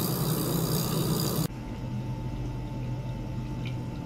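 Small ultrasonic cleaning bath running with water in it, giving a steady hum and hiss. About one and a half seconds in the sound changes abruptly: the high hiss drops away and a steady mid-pitched tone remains over the hum.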